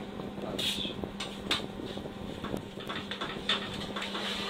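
Scattered clicks and short scrapes of a knife working meat on a shawarma spit, over a steady low hum of kitchen equipment.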